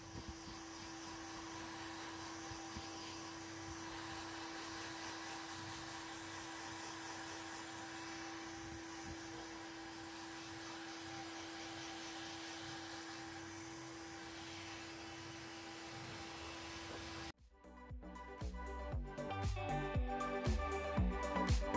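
Electric heat gun blowing steadily, a fan rush with a steady low hum, used to draw air bubbles out of freshly poured epoxy resin. It cuts off abruptly near the end, and music begins.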